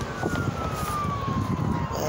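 Emergency vehicle siren in a slow wail, its pitch sliding steadily downward, over a low rumble of wind or road noise.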